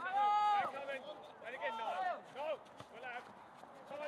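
Footballers' voices shouting across the pitch: one long, high held call at the start, then a few shorter shouts about a second and a half in.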